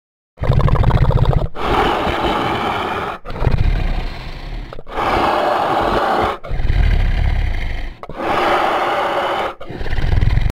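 Dinosaur roar sound effects: a series of about six loud, rough roars and growls, each lasting a second or two, with short breaks between them.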